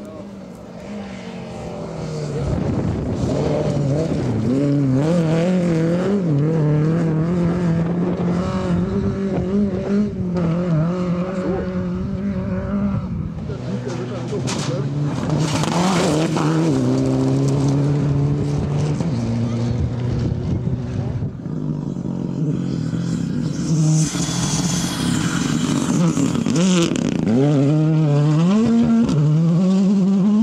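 Several rally cars in turn, driven hard on a gravel stage: engines rev up and drop back through the gears as each car approaches and passes. The loudest passes come about halfway through and again a few seconds before the end.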